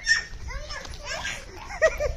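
Young children's voices calling out and shrieking during a chasing game, in several short, high-pitched calls.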